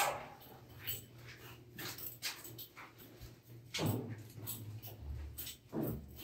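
Faint footsteps and scuffs with scattered light clicks, and two short sounds that slide down in pitch, one about four seconds in and one near the end.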